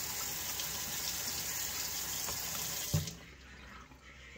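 Kitchen faucet running into a stainless steel sink, a steady rush of water. It stops abruptly about three seconds in, just after a short low thump.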